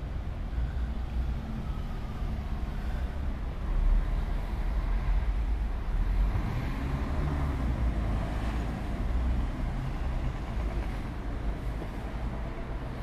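Street noise of road traffic: a steady, uneven low rumble from vehicles on the avenue, swelling a little about four seconds in and again later as traffic goes by.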